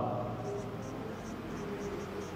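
Marker pen writing on a whiteboard: a run of short, quick strokes, a few each second, beginning about half a second in.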